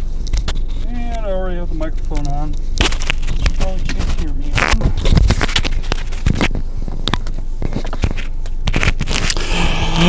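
Clicks, scrapes and crackles of a newly plugged-in microphone being handled and fitted, over a steady low rumble. A brief wordless voice sounds about a second in.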